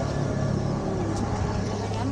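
A steady, low motor hum that holds one pitch, with faint voices in the background.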